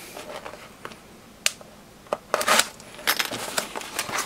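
A small cardboard mailer box being handled on a workbench: a sharp tap about a second and a half in, then scraping and rustling of the cardboard as it is picked up and turned over in the hands.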